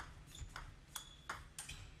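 Table tennis ball being struck back and forth in a fast rally, the plastic ball ticking off the rubber-covered paddles and the table: about five sharp pings a few tenths of a second apart.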